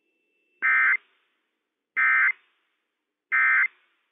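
Emergency Alert System end-of-message tones from NOAA Weather Radio: three short, identical buzzing bursts of SAME digital data, about a second and a half apart, signalling that the alert message has ended.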